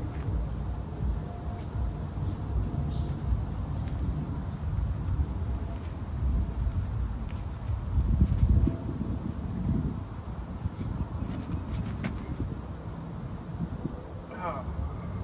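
Wind rumbling on the microphone, gusting louder about eight seconds in, with a few faint clicks near the end.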